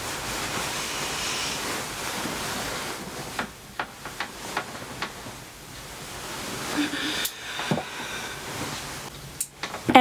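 Duvet and sheets rustling as a person rolls over in bed, with a few soft knocks in the middle and a brief voice sound near the end.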